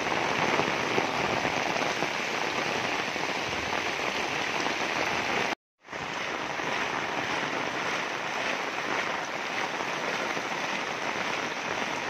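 Heavy rain falling steadily on a flooded street, an even hiss of drops hitting standing water; the sound cuts out for a moment a little past halfway.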